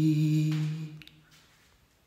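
A singing voice holding one long note that fades out about a second in, closing the song; then near silence.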